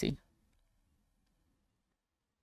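Near silence with a few faint computer mouse clicks, as the media player is left to browse files.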